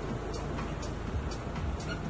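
Background music with a light ticking beat, over outdoor street noise.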